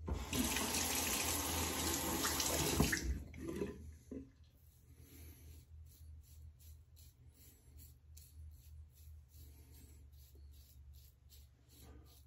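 Tap water running into the bathroom sink for about three seconds, then shut off, as the razor is rinsed under cold water. After it, faint short scrapes of the razor passing over the lathered neck.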